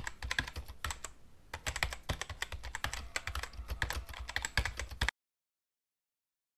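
Computer keyboard typing sound effect: a fast, irregular run of key clicks that cuts off suddenly about five seconds in.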